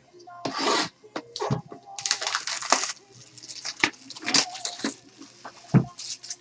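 Wrapping being torn off a cardboard trading-card box, in three rustling bursts of tearing, with a dull thump near the end as the box is handled.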